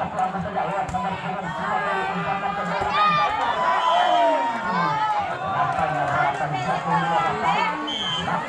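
Crowd of spectators talking and shouting over one another, many voices overlapping, with one long drawn-out call about four seconds in.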